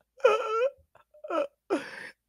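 A man laughing in high-pitched, whining squeals: a longer burst near the start, then two short ones.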